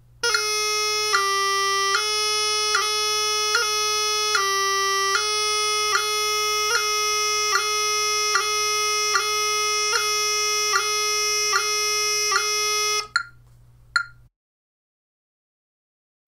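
Bagpipe practice chanter playing high G theme notes, each separated by a quick tapping grace-note movement, about one every 0.8 seconds. The playing stops about 13 seconds in; two metronome clicks follow, then dead silence.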